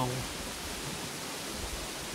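Steady rushing of a brook: an even, unbroken wash of water noise.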